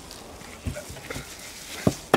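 Wet slaps and squelches of gloved hands working masala marinade into a whole raw lamb carcass on a foil tray: a few short slaps, the loudest near the end.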